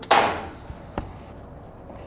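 A 2018 Chrysler Pacifica's metal exhaust hanger popping free of its rubber isolator as it is pried off: one loud, sudden clunk at the start that dies away within half a second, then a single sharp click about a second in.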